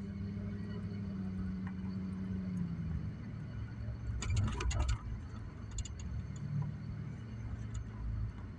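Car's engine and road noise heard inside the cabin while driving, a steady low hum whose pitch steps down a little about three seconds in. A few short clicks come around four to five seconds in and again near six seconds.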